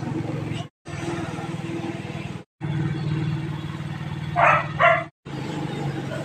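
Motorcycle engine running steadily at low speed with a low, even hum. Near the end come two short loud sounds about half a second apart, and the audio drops out briefly three times.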